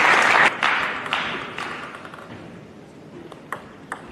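Arena audience applauding a won point, strongest in the first second and dying away by about two seconds in. Near the end come a few sharp clicks of a table tennis ball.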